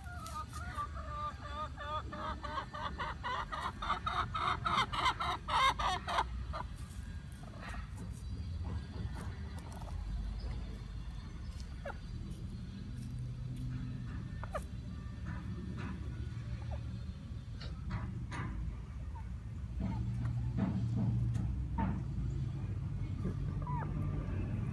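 Domestic hen clucking in a rapid run of pulses for about the first six seconds, then quieter, with scattered clicks over a low rumble.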